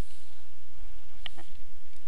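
Steady low hum of the recording, with one faint short click a little over a second in.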